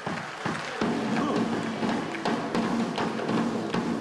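Live band playing: electric guitars and bass over a steady drum-kit beat, swelling up over the first second.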